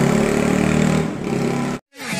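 Motorcycle engine running as it passes along the street, easing off a little past halfway; the sound cuts off suddenly near the end.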